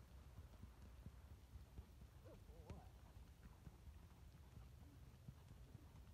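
Near silence with faint, irregular hoofbeats of a ridden Tennessee Walking Horse moving at a walk.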